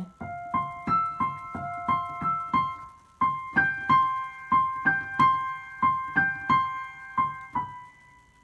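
Digital piano played with one hand: a short melody of single high notes, about three a second, repeated over and over. It breaks off briefly about three seconds in, starts again, and ends on a held note that fades.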